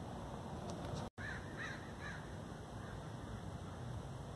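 A bird calling three times in quick succession, a little over a second in, just after a brief dropout in the sound, over steady outdoor background noise.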